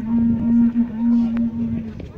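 A blown horn, as used by reenactors for a battle signal, sounding one steady low note in long blasts, with a short break about half a second in and cutting off just before the end.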